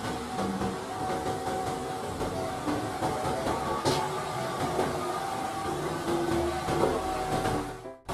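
MAN concrete mixer truck's diesel engine running as the truck drives past on a street, a steady rumble with traffic noise and a few faint steady whines.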